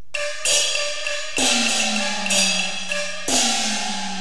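Cantonese opera percussion opening a piece: gong and cymbal strikes begin suddenly, about five in four seconds, each ringing on, with the gong's low tone sliding down in pitch after the louder strikes.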